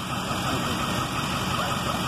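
A large emergency truck's engine idling steadily, a low even rumble with no change in pitch.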